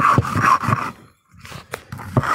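Stone muller (lodha) rubbed back and forth over a flat grinding stone (sil), crushing dry dal coarse for chaisa: gritty scraping strokes, about three or four a second. The strokes pause briefly about a second in, then start again.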